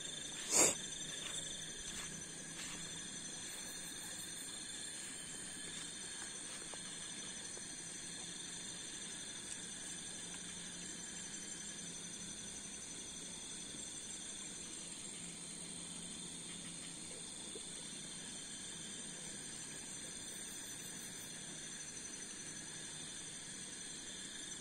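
Night insects, crickets among them, chirring steadily in several high, unchanging pitches. A single sharp knock comes about half a second in.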